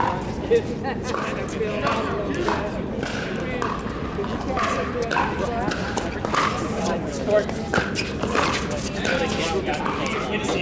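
Pickleball paddles striking a plastic pickleball during a rally: sharp pops, the loudest about half a second in and just after seven seconds, over indistinct voices.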